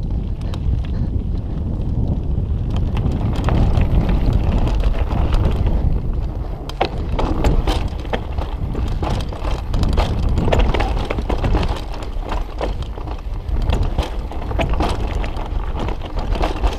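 Mountain bike descending a rough dirt trail, with wind buffeting the microphone as a steady low rumble. The tyres rattle over the ground, and the bike clatters and knocks over the bumps, most busily after the first few seconds.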